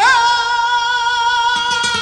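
A male flamenco singer holding one long, high sung note in a tarantos, wavering briefly at its start and then held steady. Flamenco guitar strokes come in under it about one and a half seconds in.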